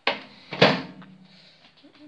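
A microwave oven door being shut: a sharp knock, then a louder bang about half a second later with a brief low ring.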